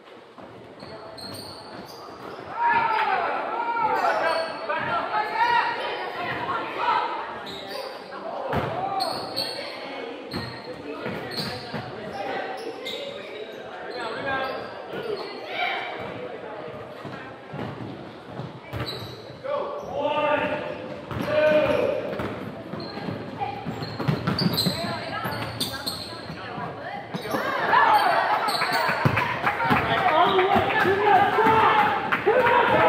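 A basketball bouncing on a hardwood gym floor in a game, with shouting voices of players and onlookers, all echoing in a large hall. The bouncing and voices are busiest near the end.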